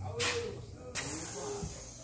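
Pressure cooker lid being handled with its weight off: a short rush of air just after the start, a sharp metallic click about a second in, then a faint high hiss.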